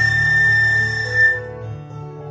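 Concert flute holding one long high note, which ends about a second and a half in, over a recorded instrumental accompaniment that keeps playing.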